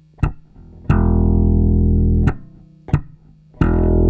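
Electric bass (Fender Jazz Bass) played slap-style: two thumb-slapped low notes on the E string, about a second in and again near the end, each ringing for a second and a half, part of a basic thumb-slap practice exercise. A metronome click ticks evenly about every 0.7 s underneath.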